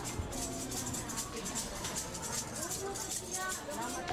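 Indoor market ambience: indistinct chatter of vendors and shoppers, with music playing in the background and scattered small clatter.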